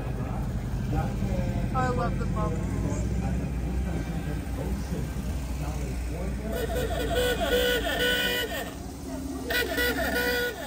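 Vintage Volkswagen buses driving slowly past in a convoy, their engines running in a steady low rumble. Several horn toots sound, one about two seconds in and more in the second half, over crowd voices.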